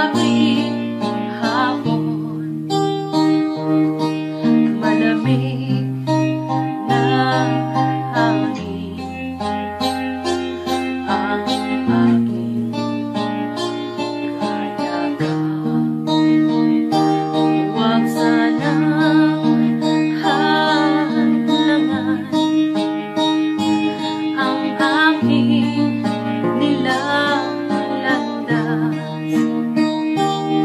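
Contemporary worship band music in an instrumental passage, guitar playing over held bass notes that change every second or two.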